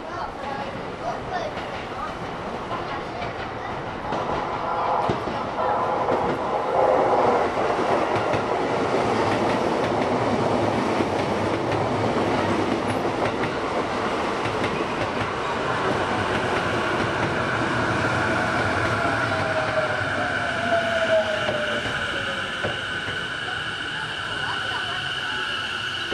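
Sotetsu 11000 series electric train running in alongside the platform, its wheels clacking over the rails and growing louder as it passes close. Near the end it brakes toward a stop, with a falling motor whine and high steady squealing tones.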